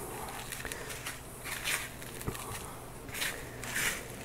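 Dry sphagnum moss and perlite rustling in a few short, soft swishes as they are pressed by hand into a plastic pot around orchid roots, with a single sharp tap a little past halfway.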